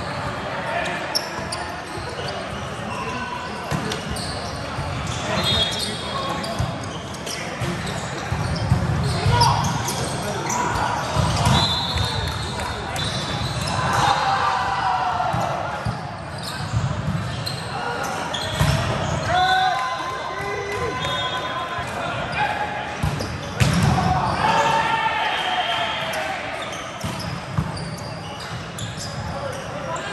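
Volleyball play in a large gym hall: the ball is struck and hits the floor again and again, with players' shouts and calls and crowd voices from several courts.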